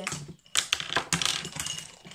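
A dense run of quick clicks and rattles, like small hard objects being handled or rummaged through, starting about half a second in.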